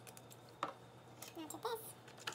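Metal fork knocking and clinking against a mixing bowl as stirring of wet banana bread batter begins: a sharp click about half a second in, then a few more clicks in the second half.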